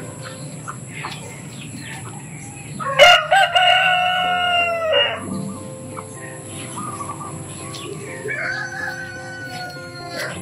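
A rooster crowing: one loud, drawn-out crow about three seconds in, and a second, weaker crow that falls in pitch near the end, with chickens clucking faintly around it.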